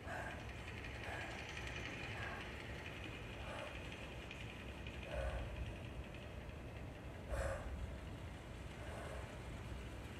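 Space-film soundtrack played over a hall's speakers: a faint steady hum and hiss with a low rumble, and a few irregular mechanical clicks and knocks, the strongest about seven seconds in.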